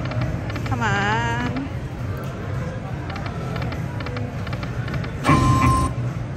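Electronic slot machine sounds over a steady low casino hum: a warbling pitched tone about a second in, and a short loud burst with one held tone near the end.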